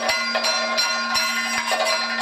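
Kathakali accompaniment led by bell-metal percussion: rapid, ringing metallic strikes, several a second, over a steady low tone.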